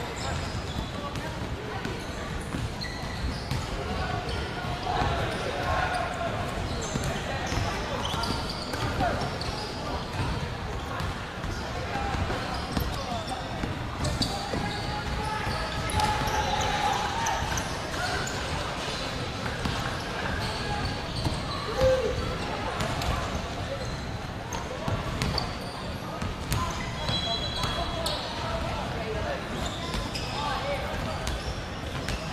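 Several basketballs bouncing irregularly on a wooden court, with a steady hubbub of many voices echoing in a large gymnasium.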